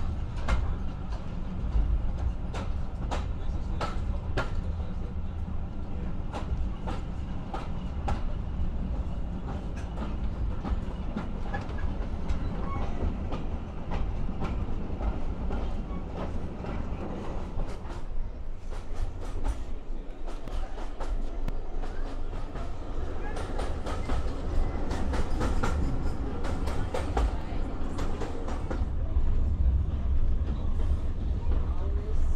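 Train wheels running on the track, a steady low rumble with repeated sharp clicks over the rail joints, heard from inside a wooden heritage railway coach.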